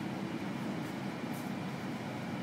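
Steady low rumble inside the cabin of a Rolls-Royce Ghost while it is being driven: road and drivetrain noise.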